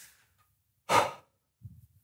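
A man's loud, exasperated sigh about a second in, followed by a few faint low knocks near the end.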